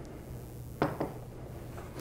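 Two light knocks of kitchenware being handled on a counter, in quick succession near the middle, over quiet room tone.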